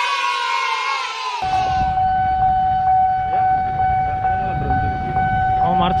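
Level-crossing warning alarm sounding a steady high tone over low traffic rumble. For the first second and a half a louder sound of many tones, slowly falling in pitch, plays over it and cuts off suddenly.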